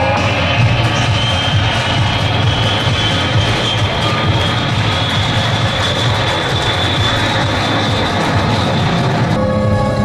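Jet airliner sound effect played over a hall's speakers as a scene transition: a steady engine noise with a whine slowly rising in pitch. It stops about nine seconds in as music starts.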